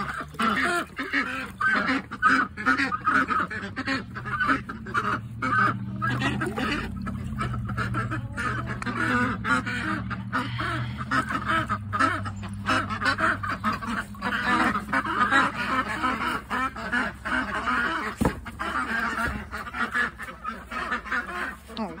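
Domestic ducks quacking loudly and almost without a break, a dense chorus of honking calls.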